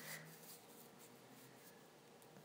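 Near silence: faint room hiss, with a soft click at the very start.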